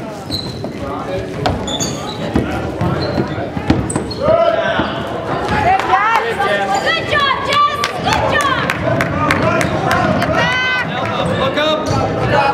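Basketball game on a hardwood gym floor: the ball bouncing and sneakers squeaking as players run, with voices shouting from about four seconds in, all echoing in the hall.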